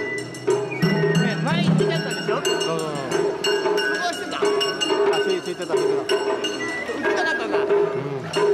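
Festival procession music with a regular pulsing beat and sharp wooden clacks, mixed with voices from the crowd.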